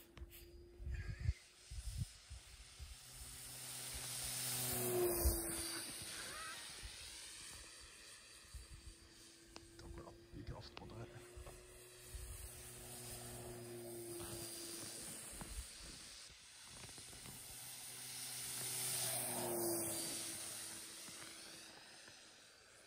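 Electric motor and propeller of an STM Turbo Beaver foam RC plane in flight: a steady whir that swells and dips slightly in pitch as it passes close, twice, about five seconds in and again near the end.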